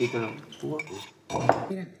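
Cutlery and crockery clinking as several people eat at a table, with quiet voices in between.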